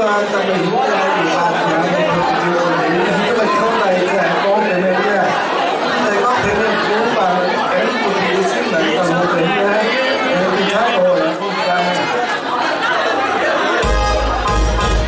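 Many people talking at once in a large hall: overlapping crowd chatter.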